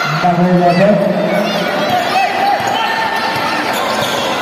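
A basketball dribbled on an indoor gym court, with sneakers squeaking in short chirps as players run, and a voice calling out in the first second or so.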